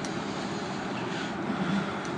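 A steady, even rush of background noise in a lecture room during a pause in speech.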